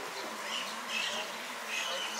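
A few short bird chirps over a low murmur of voices and a steady hiss.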